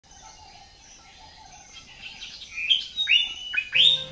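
A bird chirping: a few short calls that grow louder over the second half, each sweeping sharply up in pitch and then holding briefly, the loudest just before the end.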